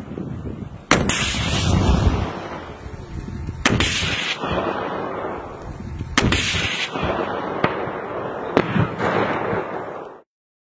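PSRL shoulder-fired rocket launchers, American-made RPG-7 clones, firing: a loud bang about a second in, then more bangs at about four and six seconds, each trailing off in a long rumble. A few shorter, sharper cracks come near the end.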